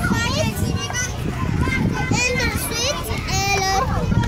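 Young children's high voices babbling and calling out at play, several short overlapping utterances with no clear words.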